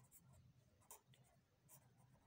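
Very faint scratching of a pen writing on notebook paper, in short separate strokes.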